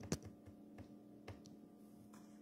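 Keys tapped on a WinBook 14-inch laptop's keyboard: a few faint, separate clicks, the loudest right at the start.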